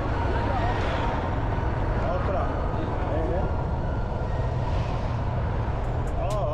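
Busy city street ambience: a steady rumble of traffic and engines under scattered voices of people in the street.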